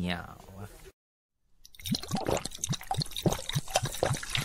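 Telugu film song track: a sung line trails off in the first second, the track drops out briefly, then a fast, percussion-heavy passage of the song starts about a second and a half in.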